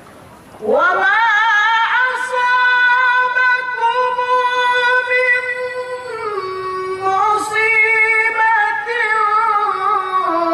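A male qori chanting Quran recitation (tilawah) in a long melodic phrase. The voice slides up into a high held note with wavering ornaments, steps down in pitch about six seconds in, then climbs again.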